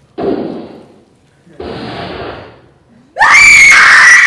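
Two stage gunshots about a second and a half apart, each a sudden bang with a short ringing tail in the hall, then a loud, high-pitched scream that starts near the end.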